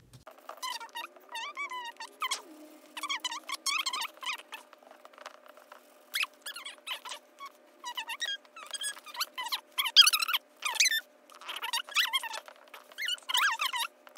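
High-pitched, squeaky chatter of sped-up voices from fast-forwarded footage, in quick irregular bursts over a steady hum.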